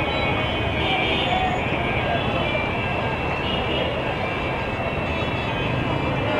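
Steady rumble of a passenger train moving slowly along the tracks, with people's voices mixed in.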